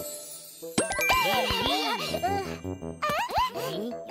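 Children's cartoon soundtrack: a tinkling chime, then bright tones that sweep quickly up and down, with a short break in the middle.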